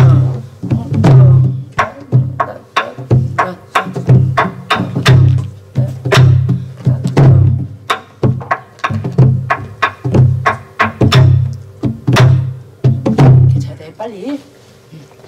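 Korean soribuk, the barrel drum used for pansori, beaten with a wooden stick in a repeating jangdan rhythm cycle. Deep drumhead strokes come about once a second, with sharp clicks of the stick on the drum's wooden shell between them.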